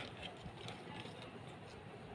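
Faint light clicks and scraping of a plastic spoon against a small cup as a white mixture is scooped, a few soft taps spread through the quiet.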